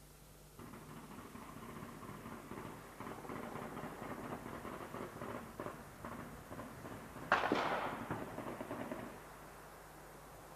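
Gunfire: a crackle of shots that builds over several seconds, with one much louder shot or blast about seven seconds in that rings off. It stops abruptly near the end.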